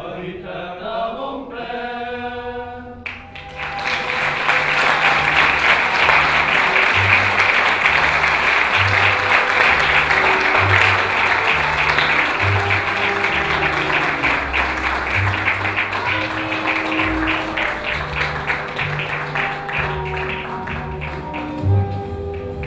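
Voices singing a held chord for the first three seconds, then a theatre audience bursts into loud, sustained applause over music; the clapping eases slightly toward the end.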